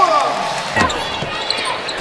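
A basketball bouncing on a hardwood court, with a few sharp bounces about a second in, over a steady arena crowd murmur.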